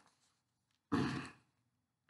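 A man's single breathy exhale or sigh, about half a second long, around a second in; otherwise near silence.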